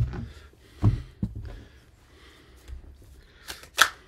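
Oracle cards being handled on a desk: a few scattered taps and snaps, the sharpest one near the end.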